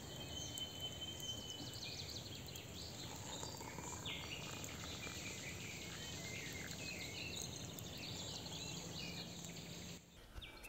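Faint outdoor ambience with birds chirping and calling at intervals.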